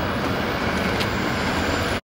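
City bus driving past close by, a steady engine rumble over street traffic noise.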